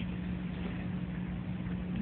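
A steady low hum with an even background hiss: room background noise, with no other event standing out.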